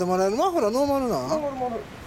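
A man's voice in one long, drawn-out sing-song vocalisation without clear words, its pitch sliding up and down, trailing off near the end.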